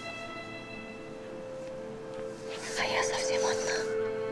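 Soft background film music of sustained, held tones. Breathy, whispered sounds come in about two and a half seconds in.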